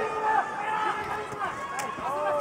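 Commentators speaking over the murmur of an arena crowd, with one short sharp click near the end.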